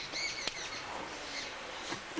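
Birds chirping faintly in the background, short high chirps clustered near the start, with a single click about half a second in.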